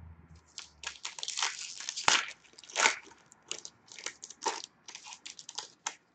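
A hockey card pack wrapper being crinkled and torn open by hand, in an irregular run of crackles and rips.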